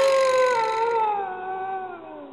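A cartoon character's long, drawn-out vocal "ooooh", held as one note that slowly falls in pitch and fades away.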